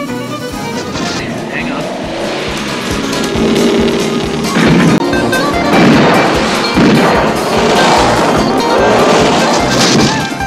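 TV action soundtrack: music mixed with the engine of the General Lee, a Dodge Charger, driving hard. From about four and a half seconds in comes a run of loud noisy blasts of gunfire.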